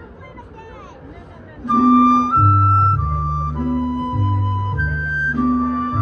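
Mariachi band starting a song a little under two seconds in: a flute plays held melody notes over deep held bass notes of a guitarrón. Before it starts, low crowd chatter and a laugh.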